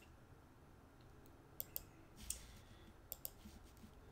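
Faint computer mouse clicks: two quick double clicks about a second and a half apart, with a brief softer click between them.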